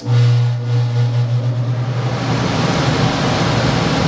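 Gas furnace blower motor switching to its high (cooling) speed as the control board answers a cooling call: a loud low hum comes in suddenly and fades over about two seconds while the rush of air builds as the blower spins up, then runs steadily at high speed.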